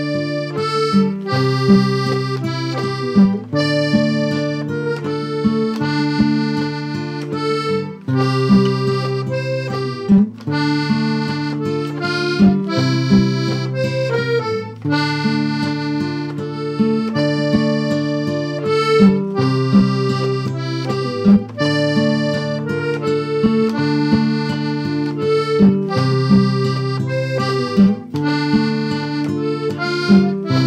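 Instrumental waltz in three-four time in D minor, played on a diatonic button accordion (Handharmonika) with a classical concert guitar accompanying. Held accordion melody notes and chords sound over a regularly repeating bass pattern.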